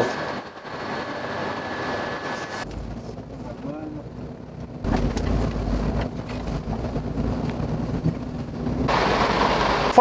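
Truck engine rumble with a steady low drone, heard from inside the cab of a tank truck, coming in about five seconds in after a stretch of faint room hum.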